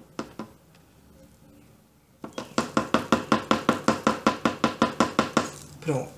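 Two single clicks, then a fast, even run of sharp ringing taps, about six a second, for about three seconds, ending in a short falling sound.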